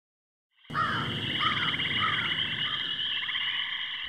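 A night chorus of calling frogs: a steady, high, pulsing trill with a few short chirps over a low rumble, starting suddenly about two-thirds of a second in after silence.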